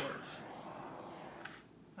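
Handheld torch clicking on, then its flame hissing steadily for about a second and a half before a second click as it shuts off, while it is passed over wet acrylic paint to pop air bubbles.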